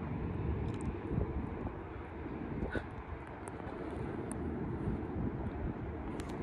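Outdoor city background: a steady low rumble with a few faint clicks.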